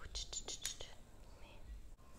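Faint whispering from a person's mouth: a quick run of soft clicks and hisses in the first second, then one short faint sound near the end.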